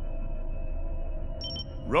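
Submersible cockpit ambience in a cartoon soundtrack: a low steady rumble under held, droning music tones, with a short high electronic beep about one and a half seconds in.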